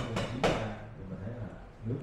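A man speaking Vietnamese through a microphone, opening with three sharp knocks in the first half second.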